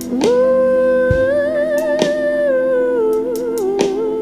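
Live band music: a long wordless sung note, hummed with a slight vibrato and stepping down in pitch near the end, over a sustained keyboard chord, with a few sharp percussion hits.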